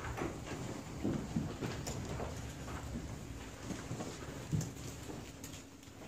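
A congregation getting to its feet: shuffling, rustling, and scattered knocks and creaks from seats and feet, thinning out near the end.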